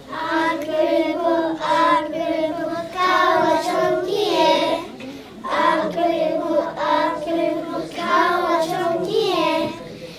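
A group of young children singing a song together, with a short break in the singing about halfway through.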